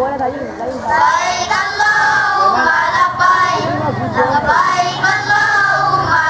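A group of children singing together, led by a girl singing into a microphone.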